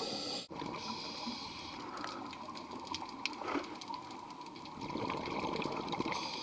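Water bubbling and rushing around an underwater camera, with a brief dropout about half a second in and scattered small crackles.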